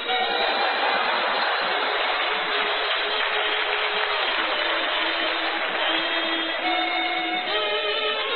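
Kazoo played in long, buzzy held notes. The pitch steps lower through the middle and jumps back up near the end, over a steady noisy background.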